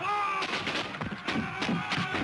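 Scattered musket gunfire in battle: many sharp shots in quick, irregular succession starting about half a second in, after a brief shout at the start.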